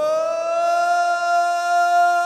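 A male singer holding one long high note, scooping up into it at the start and then sustaining it steadily with no accompaniment.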